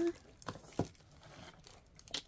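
Plastic packaging crinkling, with a few brief taps and rustles, as cellophane-wrapped craft supplies are slid and gathered on a desk.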